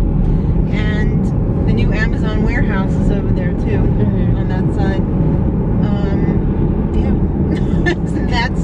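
Steady road and engine noise inside the cabin of a moving car, a constant low rumble.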